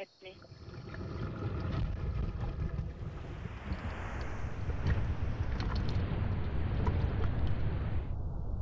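Low rumble of churning water as heard underwater, swelling in loudness over the first few seconds, with faint clicks and crackles on top.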